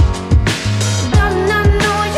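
Background music: a song with a steady drum beat and bass line.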